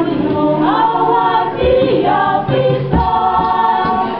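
A group of voices singing together in harmony, notes held and gliding, with a few low thumps in the second half.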